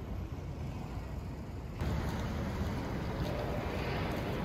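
Outdoor city noise, mostly a low rumble of distant traffic and wind. Just under two seconds in it jumps abruptly louder and brighter, to nearer street traffic with a car moving through.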